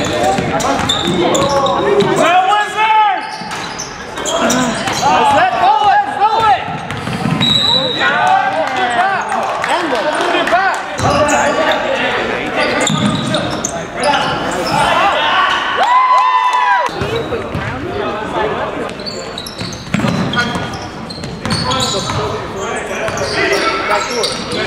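Indoor basketball game: a ball bouncing on a hardwood gym floor amid indistinct voices of players and onlookers, all echoing in the large hall.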